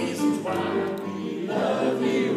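Yamaha stage piano playing sustained chords under singing voices.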